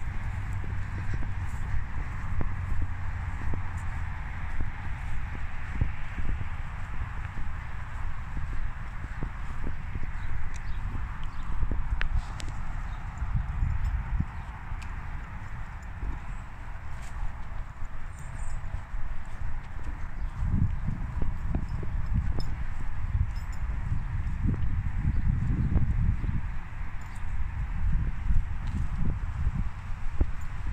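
Footsteps of a person walking on grass, a steady run of soft thuds, over a constant outdoor hiss; the thuds grow heavier in the last several seconds.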